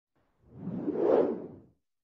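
A single whoosh sound effect, swelling up and dying away within about a second and a half.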